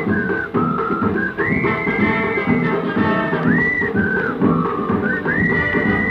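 Instrumental passage from a 1954 Odeon 78 rpm record: a high lead melody slides up into long held notes over a busy rhythmic accompaniment. The sound is narrow, with no high treble, as on an old shellac disc.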